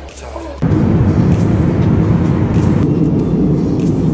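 Loud, steady rumbling cabin noise of an airliner in flight, recorded on a phone at the window seat. It cuts in suddenly about half a second in, over a softer low hum.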